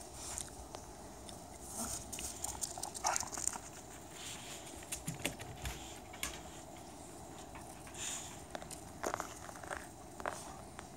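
Scattered crunching and scuffling on icy snow as small dogs play, paws scrabbling and feet stepping, with a denser run of crunches about nine seconds in.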